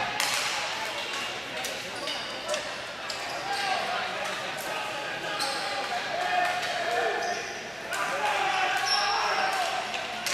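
Ball hockey game play: sticks and the plastic ball clacking and knocking on the floor in quick, irregular strikes, under shouts from players and chatter from spectators, echoing around a large arena.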